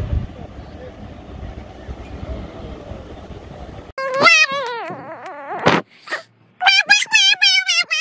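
Steady outdoor background noise with a low rumble for the first half, then a baby wailing loudly in high, wavering cries that break into short repeated bursts near the end.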